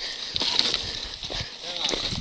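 Faint voices in the background over a steady hiss, with light clicks and rattles from a downhill mountain bike on loose rocky ground.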